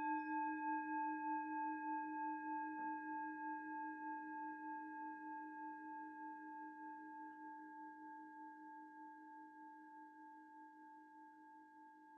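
A meditation bell rung once to open a guided meditation. It is struck just before this point and rings on, its low and high tones fading slowly, with a slight pulsing in its loudness.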